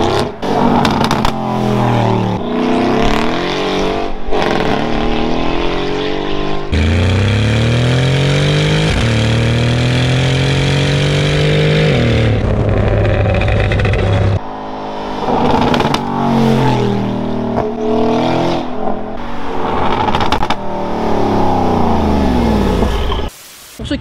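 Mercedes-AMG G63's tuned 5.5-litre twin-turbo V8 accelerating hard through a full Quicksilver exhaust. Its pitch climbs through each gear and drops back at each shift, with one long rising pull in the middle followed by a steady held note.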